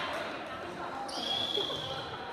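A referee's whistle blown once, about a second in, held for just under a second on one steady shrill tone.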